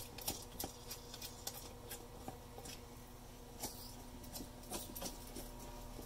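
Faint, irregular light clicks and taps of small metal hardware being handled as a recumbent trike's fairing mount is unscrewed by hand and taken off its frame clamp.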